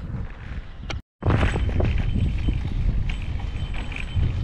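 Wind buffeting the microphone outdoors: a low, uneven rumble. It is broken by a brief dropout to silence about a second in.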